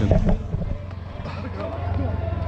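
Indistinct voices over background music, opening with a brief low rumble on the microphone.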